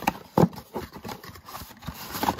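Cardboard trading-card box being handled and its flap pried open: a few sharp knocks and scrapes of stiff cardboard, the loudest about half a second in.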